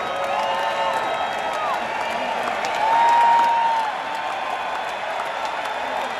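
Arena crowd applauding and cheering, with long drawn-out whoops from fans close by. The loudest whoop comes about three seconds in.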